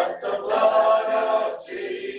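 Hymn singing, a group of voices led by a man's voice, with one long held note in the middle.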